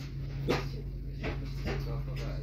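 Steady low hum inside a slowly moving train carriage, with three short, sharp calls over it.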